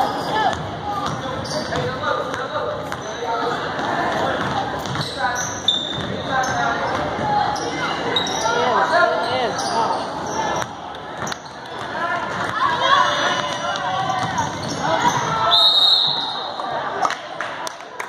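Basketball bouncing on a hardwood gym floor during play, under the shouts of players and spectators. About three-quarters of the way through there is a short high whistle, a referee's whistle stopping play.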